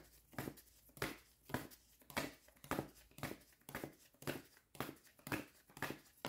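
A deck of handwritten index cards being shuffled by hand, the cards slapping and sliding in short papery strokes about twice a second.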